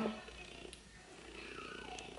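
Quiet pause with faint rustling of hands pressing a lace-front bob wig against the head, and one small click about a second in.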